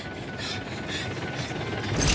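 Quiet, tense horror sound design: a low steady rumble under a faint high held tone, with soft whooshing pulses about twice a second.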